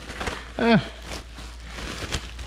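Plastic bubble wrap being handled and pulled off an object, crinkling with scattered small crackles.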